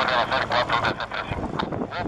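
Agusta A109S twin-turbine helicopter flying past with its rotor running as a low rumble, nearly drowned out by a rapid run of loud calls from an animal that rise and fall in pitch several times a second and thin out in the second half.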